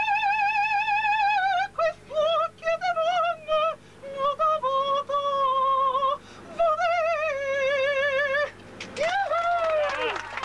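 A woman sings unaccompanied in operatic style, holding long high notes with a strong vibrato and breaking them with short breaths. Near the end she stops and applause breaks out.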